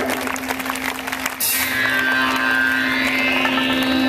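Live band music played through a concert PA and recorded from the audience. A low note is held steady throughout, and a higher tone rises slowly in pitch through the second half.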